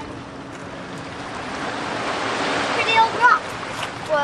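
Ocean surf washing in among boulders: a rush of water that swells over about two seconds and then falls away. A brief voice sound comes near the end.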